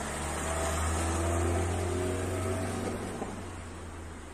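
Muddy floodwater rushing over flooded ground: a steady low rumble with a hiss over it, swelling slightly in the middle and easing near the end.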